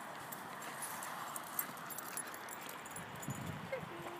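Vizsla puppy moving through low shrubs on a leash: rustling and scattered light clicks over a steady background hiss, with a short low sound about three seconds in.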